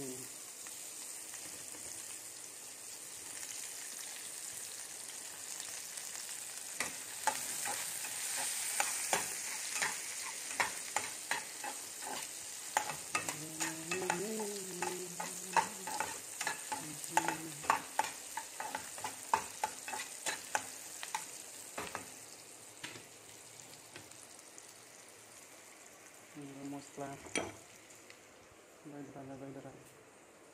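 Sliced onions frying in oil in a pan on a gas stove: a steady sizzle. Through the middle stretch a utensil clicks and scrapes against the pan about twice a second as the food is stirred.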